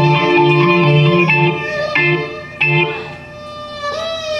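Violin and electronic keyboard playing live: bowed violin notes over low keyboard notes, in an instrumental passage without vocals. The music drops quieter in the second half.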